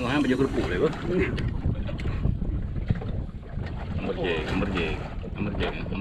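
Gusty wind rumbling on the microphone over the wash of the sea around a small open fishing boat, with men's voices calling out near the start and again about four seconds in.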